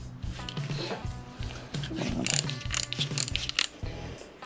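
A ratchet torque wrench clicking as it draws up a connecting rod bolt on a Ford 347 stroker toward its torque figure, with background music running under it.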